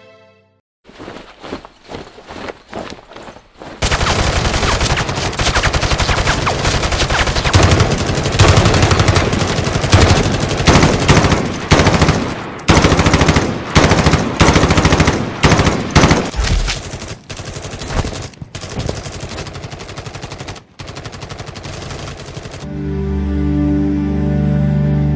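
Automatic rifle gunfire: a few scattered shots at first, then long sustained bursts of rapid fire with short breaks, stopping shortly before the end as music comes back in.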